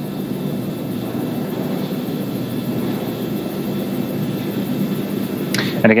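A steady low rushing noise with a faint hum underneath, unchanging throughout.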